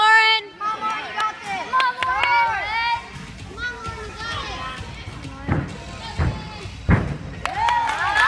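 Girls' high-pitched shouting and cheering, with a loud yell at the start. About five and a half seconds in come three heavy thuds, about two-thirds of a second apart: a gymnast's feet and hands striking the spring floor during a tumbling pass.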